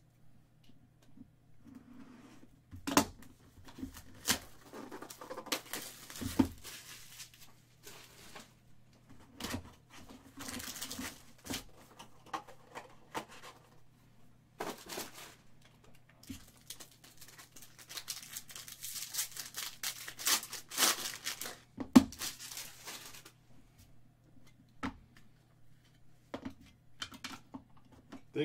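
Foil trading-card packs from a 2018 Bowman Chrome box being torn open and crinkled, in several bursts of crackling wrapper noise. Scattered knocks of the box and cards being handled on a table, the sharpest about two-thirds of the way in.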